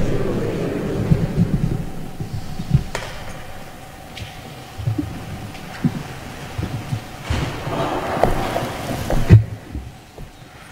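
Footsteps and shuffling of a small group walking through a church, with scattered knocks and a louder knock near the end.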